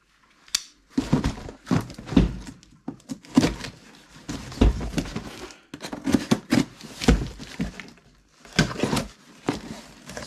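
A cardboard box being cut open with a small blade and handled: irregular scraping, slicing and tearing of cardboard with knocks, starting after a sharp click about half a second in.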